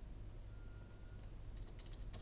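Faint computer keyboard keystrokes: a few light key clicks about a second in and a few more near the end, as a word is typed.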